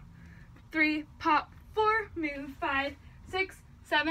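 A young woman's voice calling out short separate words in a small room, a string of counts spaced about half a second apart as she dances.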